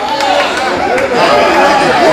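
Voices fill the church hall: a preacher's amplified voice mixed with the congregation calling out responses.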